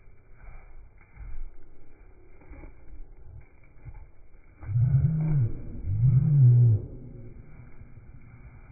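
A Zwartbles sheep bleating twice, two deep calls of about a second each near the middle, rising and falling in pitch.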